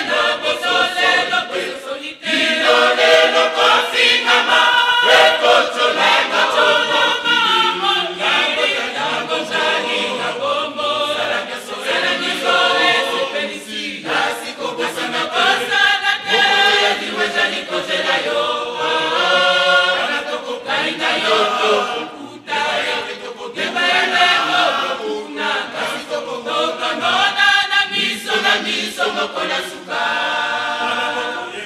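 Church choir of women and men singing a hymn together in harmony, with brief breaks between phrases about two seconds in and again around twenty-two seconds.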